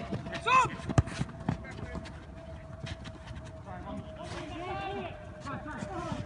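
Footballers shouting across the pitch, with a sharp thud of a football being struck about a second in and a lighter knock half a second later. A faint steady hum runs underneath.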